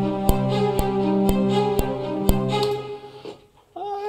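Sampled orchestral strings playing back: a sustained legato cello line from the Abbey Road Orchestra cello library, with sharp short ticks about twice a second. The music fades out about three seconds in, and a man's voice starts near the end.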